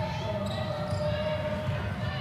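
Basketball dribbled on a hardwood court over steady arena crowd noise, with a voice held on one note in the background partway through.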